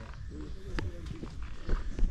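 Quiet, indistinct speech over low rumble and thumps from walking with a handheld camera. There is a sharp click just under a second in and a louder thump near the end.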